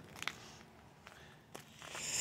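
Near silence: faint background noise with a couple of soft clicks, one near the start and one about a second and a half in.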